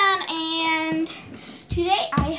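A young female voice singing a few wordless notes: a falling note, then one note held steadily for under a second. A short low thump comes near the end.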